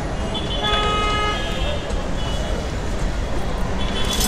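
Busy city street traffic: a steady rumble of engines with vehicle horns honking, one held for about a second near the start and shorter toots later.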